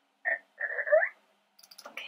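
Two short vocal sounds from a person's voice, the second sliding upward in pitch, followed near the end by a few quick clicks.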